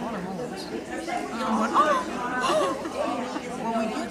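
People talking: voices and chatter of a crowded hall.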